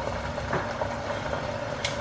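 Chicken frying in hot oil in a lidded pan: a steady sizzle, with one brief sharp click near the end.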